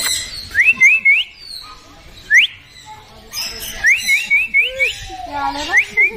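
Short, clean rising whistles in quick runs of three to five, with single ones between. A lower, voice-like sound comes shortly before the end.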